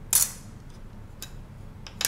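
Carbon fibre quadcopter frame pieces handled and set down on a tabletop: one sharp clack just after the start, then two faint taps.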